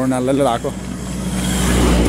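A car passing close by, its engine and tyre noise rising to a peak near the end.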